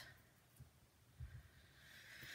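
Near silence, with a few faint soft taps from fingers and a poking tool handling a die-cut cardstock snowflake.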